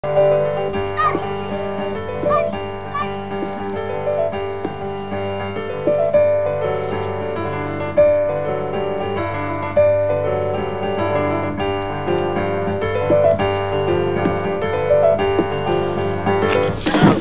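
Slow piano music: a flowing melody of single notes over long-held low notes.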